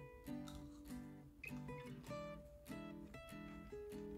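Soft background music on acoustic guitar, a steady pattern of plucked notes.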